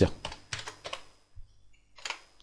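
Computer keyboard being typed on: a few quick separate keystrokes in the first second, then a couple more after a short pause.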